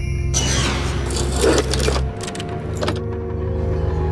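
Dark, droning DVD-menu music. About a third of a second in, a loud whooshing sweep sounds, and a few sharp clicks follow a little after two seconds. The drone then holds steady.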